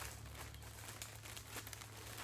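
Clear plastic wrapping around a sandwich crinkling as it is handled and turned in the hands: a dense, irregular run of small crackles.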